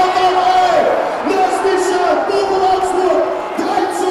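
Football stadium crowd chanting in unison, with long held notes that shift in pitch about once a second.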